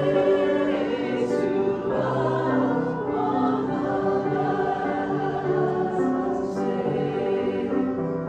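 A choir singing slow sacred music in long, held chords, the notes changing every second or so.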